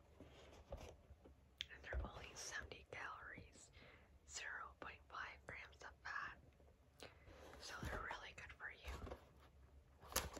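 Close-miked mouth sounds of licking and sucking on a frozen Creamsicle ice pop: soft wet slurps, smacks and lip clicks in short irregular runs.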